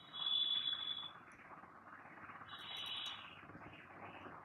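Saree fabric rustling as it is unfolded and handled, with two brief steady high-pitched squeals: one in the first second and one about two and a half seconds in.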